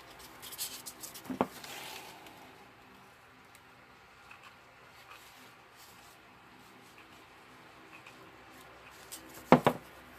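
Hands handling craft materials on a table: a brief rustling scrape with a sharp click about a second and a half in, then a couple of sharp knocks close together near the end.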